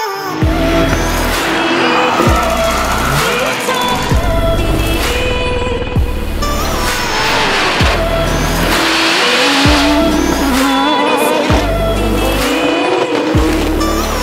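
Electronic music with a heavy bass beat, mixed with drift cars' engines and squealing tyres as they slide sideways, the tyre noise strongest in the middle.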